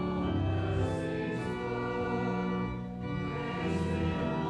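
Church organ playing slow, sustained chords that change every second or two.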